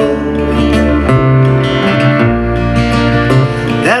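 Acoustic folk band playing an instrumental passage between verses: strummed acoustic guitars with violin and upright bass. A voice comes back in singing right at the end.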